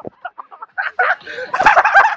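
People's voices shrieking and yelling without clear words, louder and more crowded in the second half.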